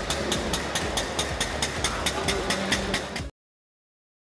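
Single-cylinder engine of an early three-wheeled motor car of the Benz Patent-Motorwagen type, running with an even chug of about five strokes a second. It cuts off suddenly near the end.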